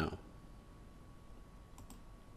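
Quiet room tone with a couple of faint clicks near the end, from computer input used to switch from the web browser to the code editor.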